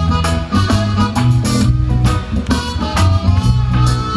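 Live band playing an instrumental passage through a PA: electric guitar over a strong bass line and a drum kit keeping a steady beat.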